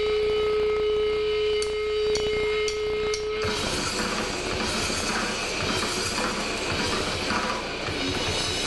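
A steady held guitar feedback tone with four sharp clicks about half a second apart, like drumsticks counting in; then, about three and a half seconds in, a grindcore band crashes in at full volume with fast drums and distorted guitar and bass.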